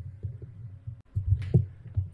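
Low, throbbing hum with no speech, and a brief louder swell about one and a half seconds in.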